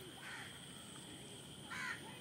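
A bird giving two short harsh calls, a weaker one shortly after the start and a louder one near the end.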